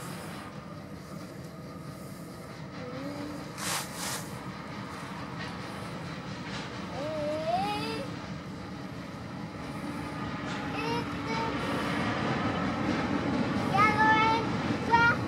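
Diesel-hauled freight train approaching and passing, its locomotive engine and wheel noise growing steadily louder.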